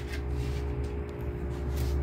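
A steady hum with a few faint metallic clicks as a small hex key unscrews a brass gas orifice jet from a stove's burner base.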